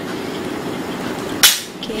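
Hijab fabric handled close to the microphone: a low steady rustle, then one short, sharp swish about one and a half seconds in.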